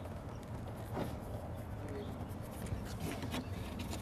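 Low outdoor background with a few faint clicks and scrapes from hands feeding the rubber tabs of a removable plastic fender flare down through holes in the flare, about a second in and again near the end.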